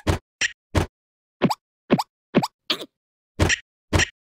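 Cartoon plopping sound effects: a run of about nine short, squishy plops at an uneven pace, several dropping quickly in pitch, for a larva's body moving as it climbs a vine.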